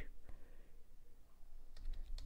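A few faint keystrokes on a computer keyboard, typing a word.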